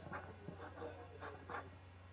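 Faint scratching of a stylus drawing short strokes of a resistor symbol on a pen tablet, over a steady low electrical hum.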